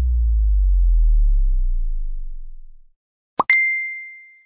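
Animated end-screen sound effects: a deep bass swell that slides slowly downward in pitch and fades out after about three seconds. Then, near the end, a quick rising pop and click, followed by a single bright ding that rings on.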